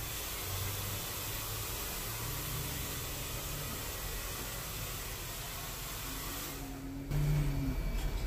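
Steady hiss of background noise with a faint low hum; about a second before the end it grows louder and a short low tone joins.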